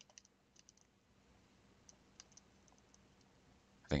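Faint, irregular light clicks of a stylus tapping and dragging on a tablet surface while handwriting, most of them in the first second and a few more about two seconds in. A man's voice begins right at the end.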